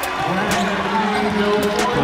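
A basketball bouncing on a hardwood court, several sharp knocks, under indistinct voices in the arena.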